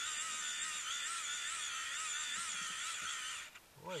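A steady high-pitched electronic whine that wavers slightly in pitch, with faint voices underneath; it cuts out briefly just before the end.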